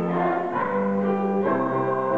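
Children's choir singing held chords in harmony, the chord changing about half a second in and again about a second later.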